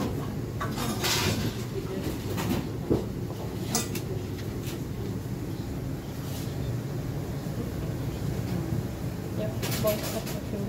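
Wooden rolling pin rolled back and forth over dumpling wrappers on a stainless steel worktable, with a few light knocks. Under it runs a steady low rumble of kitchen background noise, with faint voices.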